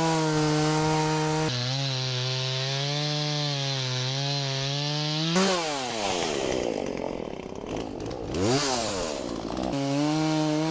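Gas-powered two-stroke chainsaw idling steadily, then revved up and cutting into a fallen pine log: the engine note drops and roughens under load for a few seconds. It revs and falls away once more near the end, then settles back to idle.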